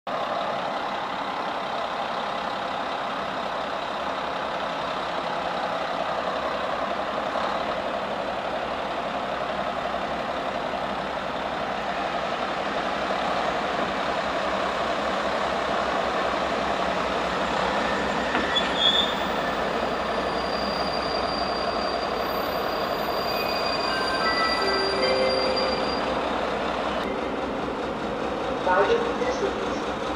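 A class 749 'Bardotka' diesel locomotive and its passenger train approach, with a steady running noise that slowly grows louder. In the second half come several short, high, squealing tones at changing pitches.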